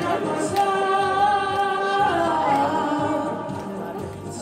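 A 12-year-old boy singing into a handheld microphone. He holds one long note for about a second and a half, then slides down onto lower notes that fade near the end.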